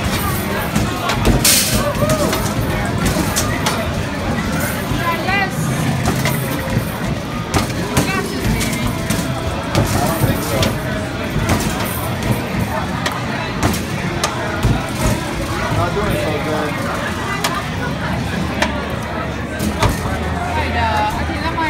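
Busy bar chatter and background music, with frequent sharp clicks from ping-pong balls bouncing on an arcade beer pong machine.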